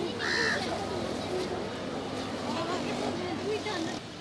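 Murmur of many people's voices, with one loud crow caw just after the start.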